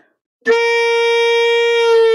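Alto saxophone sounding its octave G, entering about half a second in and held steady, then sagging slightly in pitch near the end. This is a drop: the embouchure is loosened to let the note fall toward G flat.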